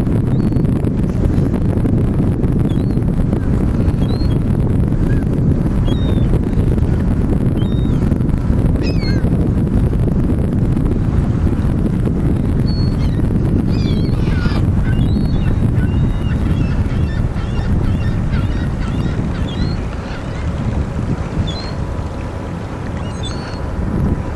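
Steady low rumble of wind buffeting the microphone, easing a little near the end, with many short, high bird calls scattered over it.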